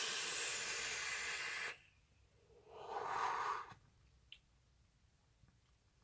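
A long draw on a sub-ohm vape, a dual-coil dripping atomizer on a VooPoo Drag mod running 80 watts on a 0.1-ohm build, giving a steady airflow hiss for under two seconds. About a second later comes a softer, breathy exhale of the vapour, and then a single faint click.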